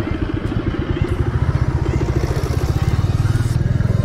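Royal Enfield Bullet's single-cylinder engine running at low riding speed, with an even, rapid thump that grows louder about a second in as the bike picks up.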